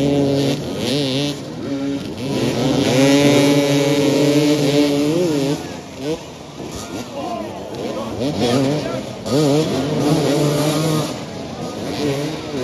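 Several motoball dirt-bike engines revving on the pitch, their pitch repeatedly rising and falling as riders accelerate and ease off, with a longer held rev in the middle.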